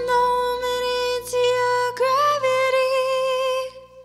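A female singer holds a long final note with vibrato, sliding up briefly about halfway through, over soft steady accompaniment. It fades out just before the end.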